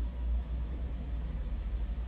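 Steady low rumble with a faint even hiss, with no distinct events.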